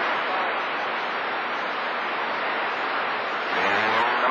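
CB radio receiver on channel 28 hissing with static and band noise from skip reception, faint distorted voices buried in the noise. Near the end a stronger station keys up, bringing a low hum just before its voice comes through.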